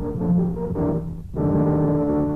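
Orchestral music led by brass, a short run of separate notes ending on a long held chord.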